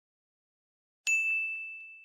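A single ding sound effect: one bright bell-like tone struck sharply about a second in, then ringing and fading away over about a second.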